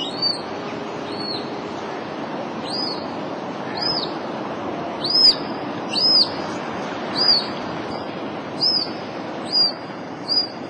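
A high-pitched whistled call, short and arching down at the end, repeated about once a second over a steady rush of flowing water.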